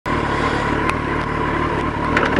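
Motorcycle engine idling steadily, heard through a microphone inside the rider's helmet, with a thin steady high tone above the engine note.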